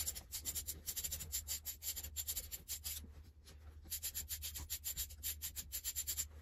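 Rapid clicking of a hand tool backing a bolt out of a two-stroke dirt bike's crankcase. The clicking stops for a moment about halfway, then resumes.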